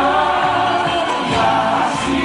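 A group of male and female singers singing a Greek popular song together into microphones over a live band.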